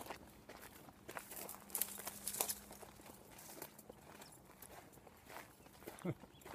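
Footsteps on a dirt path strewn with gravel and broken asphalt: faint, uneven crunches and scuffs.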